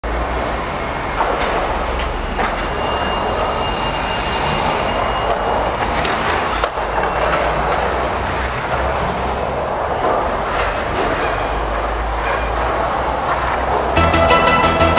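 Skateboard wheels rolling over rough concrete, a steady rumble broken by a few sharp clacks.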